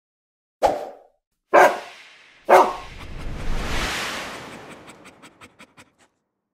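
Three dog barks about a second apart, each sharp and quickly dying away, played as a sound logo. After them comes a swelling rush and a quick run of ticks that fade out.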